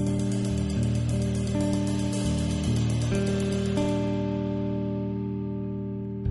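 Six-string electric bass ringing sustained low notes and chords that shift several times, over a drum kit's cymbals, which wash and die away about four seconds in.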